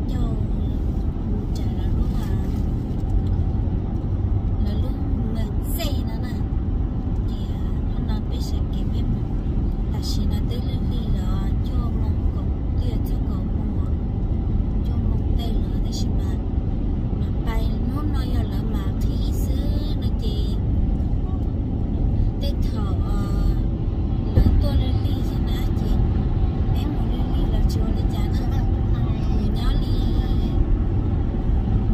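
Steady low road and engine rumble inside a moving car's cabin, with people talking over it.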